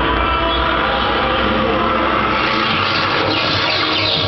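Tower of Terror show audio playing loudly in the elevator cab: music and effects over a deep rumble that drops away about two-thirds of the way through.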